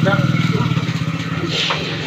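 An engine running with a steady low pulsing hum, growing fainter in the second half.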